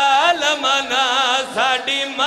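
A man's voice chanting in a high, melodic mourning lament, the pitch swinging and wavering through long drawn-out phrases with brief breaks. This is the sung, elegiac style of a zakir's recitation at a Shia majlis.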